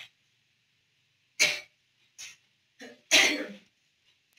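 A person coughing in a few short bursts: a sharp cough about a second and a half in, two smaller ones, then the loudest, longer cough just after three seconds.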